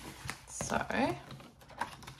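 A clear plastic ring binder being opened and its pages flipped: a quick run of light clicks and taps from the plastic cover and sleeves, with a sharper click near the end.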